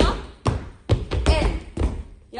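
Dancers' feet stamping and landing on a studio floor in time, a thud about every half second, with voices between the thuds.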